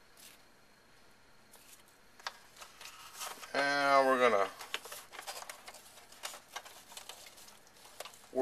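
Faint plastic clicks and rubbing as hands fit a new belt and the brush roll into a Rainbow E-Series power nozzle's housing. About halfway through comes a louder, drawn-out wordless voice sound, about a second long and falling in pitch.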